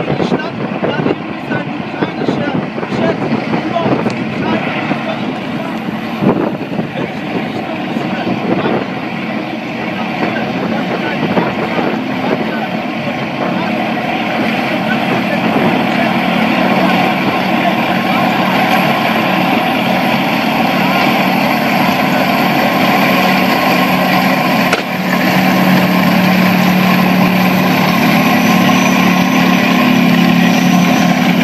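A column of tanks driving along a road, their engines and tracks growing steadily louder as they approach and pass close by, loudest near the end. People's voices are heard over the early part.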